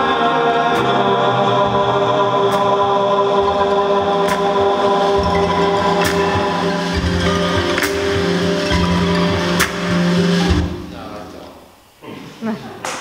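Live band music with sustained, layered singing and chords over a slow beat, a sharp stroke about every two seconds. It fades out over the last second and a half as the song ends.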